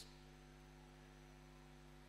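Near silence with a steady electrical mains hum and its overtones.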